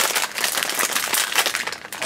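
A foil blind bag crinkling as hands handle it and work it open, a dense, rapid crackle that eases a little near the end.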